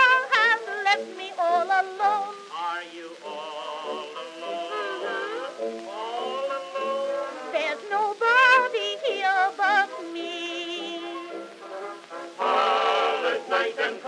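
Acoustic-era Edison Amberol wax cylinder recording playing: a soprano voice with small orchestra, in a thin sound with no bass.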